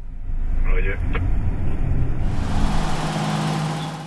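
Engine and road rumble inside a moving vehicle's cabin, with a brief voice and a click about a second in. A little past halfway it changes to a steady hiss over a low engine hum.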